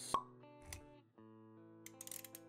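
Quiet intro music of sustained notes, with a short pop sound effect just after the start and a soft low thud a little before the middle.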